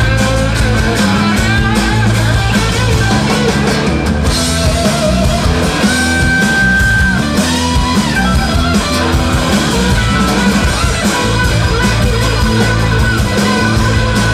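Live blues-rock band playing an instrumental passage: an electric guitar solo on a sunburst Stratocaster-style guitar over bass and drums. About six seconds in, the guitar holds one high note for about a second.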